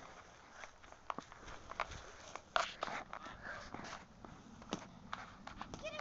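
Scattered taps and knocks from a lacrosse stick head working a ball on a lawn, irregular, with the loudest knock about two and a half seconds in.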